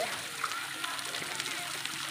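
Faint voices of people talking, over a steady hiss.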